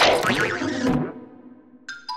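Cartoon sound effect: a loud hit with a wobbling pitch glide that fades over about a second, followed by a short ding near the end.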